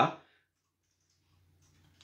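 A man's word trailing off, then a pause holding only faint room tone with a low steady hum.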